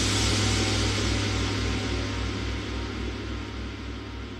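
Cartoon rumble sound effect: a loud, noisy rumble with a low throbbing beat that slows and gradually fades.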